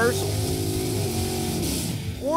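A first-generation Chevrolet Camaro Z/28 drag car's engine held at steady high revs as it spins its rear tyres in a burnout at the start line.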